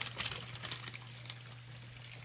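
Quiet kitchen room tone: a steady low hum, with a few faint clicks in the first second or so.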